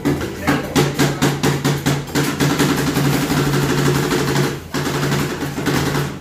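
Metal spatulas rapidly and irregularly chopping and scraping ice cream on a steel rolled-ice-cream cold plate, a clatter of sharp metal strikes over a steady low hum, briefly pausing near the end.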